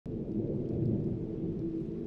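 Low, steady rumbling drone that starts abruptly at the very beginning, with a faint held tone in it.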